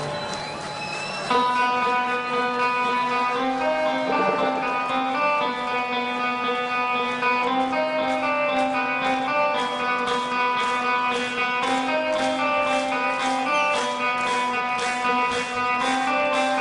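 Electric guitar played live through an amplifier, picking a repeating riff of single notes that comes in sharply about a second in.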